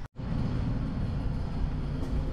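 Steady low rumble of an antique elevator car in motion, starting abruptly a moment in.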